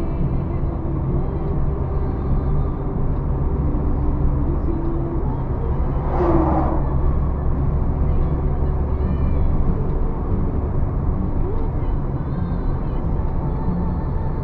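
Steady low drone of a car's engine and tyres at highway speed, heard inside the cabin. A short voice-like sound breaks in about six seconds in.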